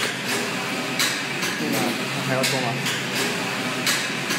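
Longxing computerized flat knitting machine running, its carriage sweeping back and forth across the needle beds with a steady mechanical whir and a sharp knock at each reversal about every second and a half. It is knitting waste yarn.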